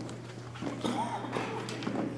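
Indistinct talk among several people, with scattered footsteps and light knocks on a hard floor, over a steady low electrical hum.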